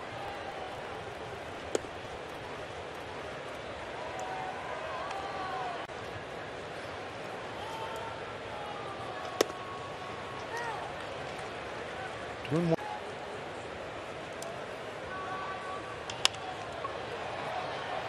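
Ballpark crowd murmuring steadily, broken by a few sharp single cracks. The last crack, about two seconds before the end, is a bat hitting a fly ball.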